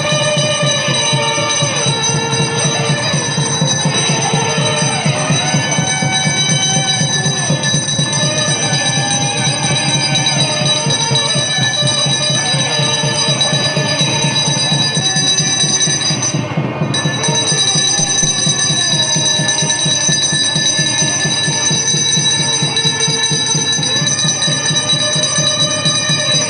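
A bell ringing continuously during a temple ritual, over devotional music with a melody of sliding notes and a fast steady beat. The bell stops for a moment about two-thirds of the way through, then rings on.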